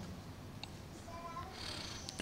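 A quiet pause between spoken phrases: faint room noise with a few brief, faint thin tones around the middle.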